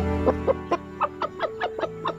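Chickens clucking, a quick run of short calls about six a second, over a fading held note of background music.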